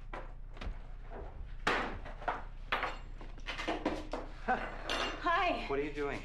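Kitchen rummaging: a run of short knocks and rattles from cupboard doors, drawers and kitchenware, as in a search of the cupboards for something to eat. A brief voice comes in near the end.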